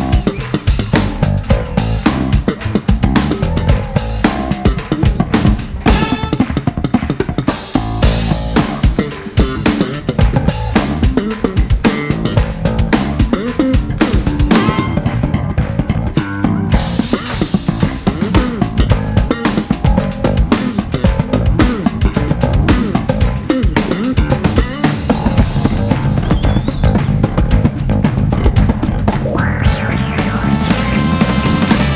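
Live band jam with electric bass guitar and drum kit playing a driving groove, the bass featured.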